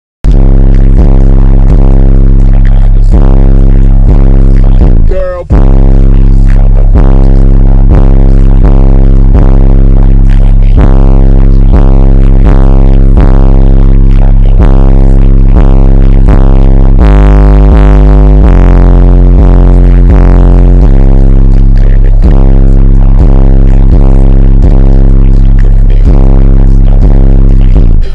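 Bass-heavy music played very loud through American Bass XD 8-inch subwoofers in a ported box, the cones at full excursion, with deep sustained bass notes on a steady beat that drop lower for a few seconds past the middle. The recording sits at full scale throughout, with one short dropout about five seconds in.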